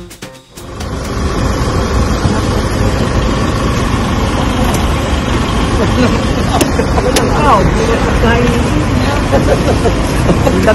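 Loud, steady curbside traffic noise with vehicles running nearby. Voices come in faintly from about six seconds in.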